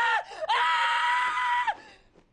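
A man screaming in horror: a cry that breaks off just after the start, then a long, high scream held steady for over a second that cuts off near the end.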